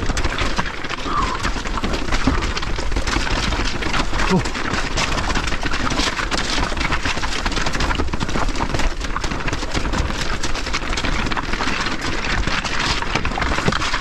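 Electric mountain bike descending a loose rocky trail: tyres crunching and clattering over stones with a dense, continuous rattle of knocks from the bike, and wind rumbling on the microphone.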